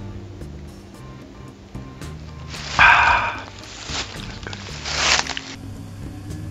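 Background music with low held notes, over which come two loud, noisy slurps as a man drinks soup straight from the can, the first and louder about halfway through, the second near the end.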